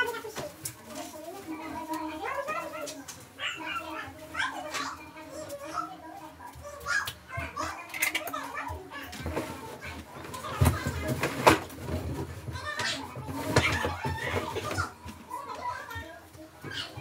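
Young children's voices, talking and playing, with several knocks and thumps in the second half.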